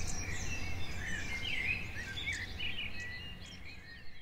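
Birds chirping, many short overlapping calls over a low steady rumble of outdoor ambience, gradually fading out.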